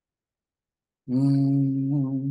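Dead silence, then about a second in a man's voice holds one long, level, low vocal note, a drawn-out hesitation sound like "uhhh".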